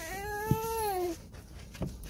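One drawn-out wordless vocal call from a person, about a second long, its pitch rising a little and then falling away, followed by a soft knock.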